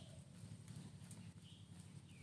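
Faint outdoor ambience: a steady low hum with a few faint, short high chirps and light scattered ticks.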